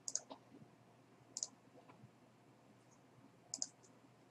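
Faint computer mouse clicks: a short run of clicks at the start, then a quick double click about a second and a half in and another near the end.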